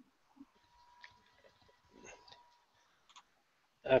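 Very quiet, with a few faint scattered clicks and a faint steady tone that starts about a second in and stops just before three seconds.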